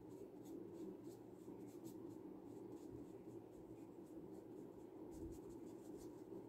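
Faint, scratchy strokes of a water brush tip rubbing over sketchbook paper as it wets and spreads a dark green ink swatch, over a steady low room hum. The strokes come in clusters, in the first two seconds and again near the end.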